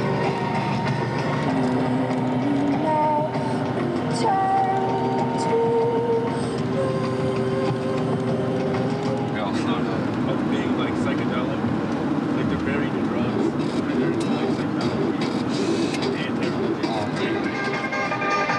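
A layered soundtrack of held tones that step and slide slowly in pitch. About ten seconds in it turns denser and noisier, with the tones sinking into a rough wash.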